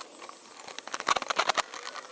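Handling noise from a camera being gripped and moved: a quick cluster of clicks and rattles in the middle, with rustling either side.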